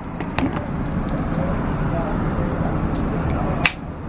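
Steady outdoor street noise with a low traffic hum, and one sharp click near the end.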